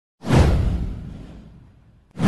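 A whoosh sound effect with a deep low rumble under it, starting suddenly and sweeping down in pitch as it fades out over about a second and a half.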